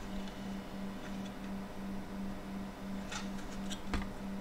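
Light clicks and a sharp tap near the end as a 3D-printed PLA plastic case holding an Arduino and CNC shield is handled, over a low steady hum.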